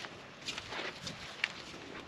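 Footsteps on grass and dirt: a few soft, irregular steps.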